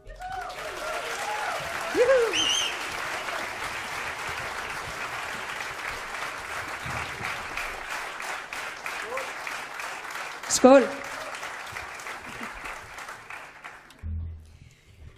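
Concert audience applauding steadily after a song, the clapping slowly thinning toward the end, with a few voices calling out over it, once near the start and again about two thirds of the way through.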